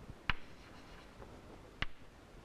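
Chalk tapped against a chalkboard to make dots: two sharp taps about a second and a half apart.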